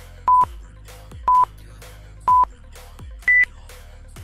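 Workout interval timer counting down: three short beeps a second apart, then a higher final beep that marks the end of the work interval. Electronic dance music with a steady beat plays underneath.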